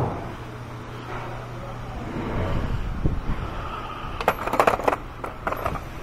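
Small hand tools being gathered up from the engine bay, clinking and clattering, with a cluster of sharp clicks about four to five seconds in over a low steady hum.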